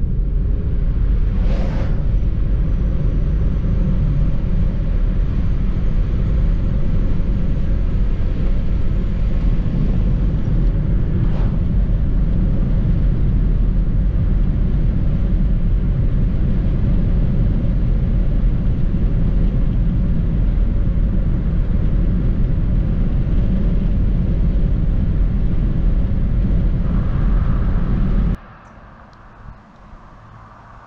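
Steady low rumble of road and engine noise inside a moving car, with a brief whoosh of an oncoming vehicle passing about two seconds in. Near the end it cuts abruptly to much quieter outdoor background.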